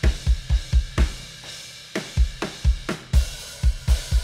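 Recorded acoustic drum kit played back from a multitrack session: quick runs of kick drum hits and sharp snare strikes under a steady wash of cymbals. It is an edited drum comp being auditioned across the join between two takes.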